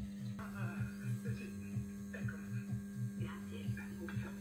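Steady mains hum from the ballasts of a lit SCAE pedestrian traffic light, heard close to its housing. Faint voices and a low regular beat sound underneath.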